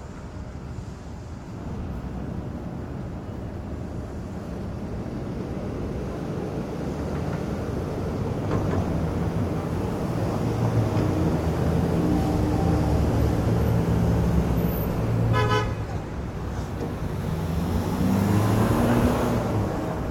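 City street traffic: vehicle engines growing louder as they come close and pass, with a short car-horn toot about fifteen seconds in.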